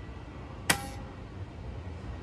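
PowerBook 1400cs PC Card slot ejecting a PCMCIA CompactFlash adapter as the machine shuts down: a single sharp click with a brief ringing tone, about two-thirds of a second in.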